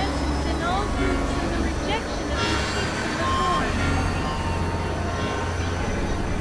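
Experimental electronic noise piece: a steady low synthesizer drone under a dense hissing wash, with many short tones sliding up and down.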